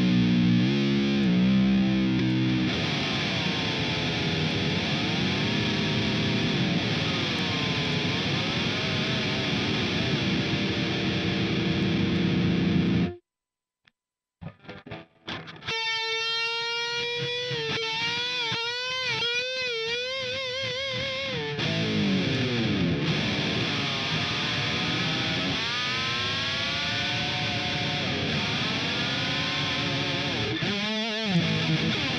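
Ibanez Jem Jr. electric guitar played with distortion while its tremolo bar is worked hard, stress-testing the tremolo bridge. It gives wide, wobbling vibrato and pitch dips and dives. About halfway through it stops briefly, then comes back with a single note wobbled on the bar and a falling dive a few seconds later.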